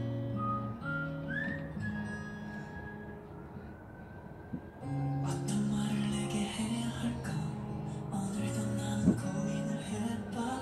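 Background music: an instrumental piece of long held notes that turns fuller about five seconds in.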